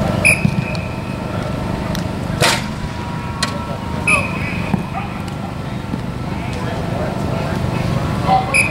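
Outdoor football practice field sound: voices of players and coaches at a distance, with a short whistle blast just after the start and another about four seconds in. A single sharp smack comes about two and a half seconds in.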